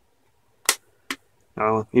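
Two sharp clicks about half a second apart, the first louder: the press-fit plastic clips of a Buffalo MiniStation HD-PC500U2 portable drive case snapping free as a blade is pushed along its seam.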